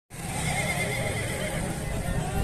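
A horse whinnying, a wavering call in the first second, over a steady low rumble.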